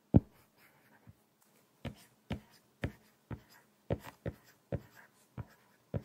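Apple Pencil tip tapping and sliding on an iPad's glass screen as a word is written out letter by letter: a run of short, sharp taps, about two a second, the loudest just after the start.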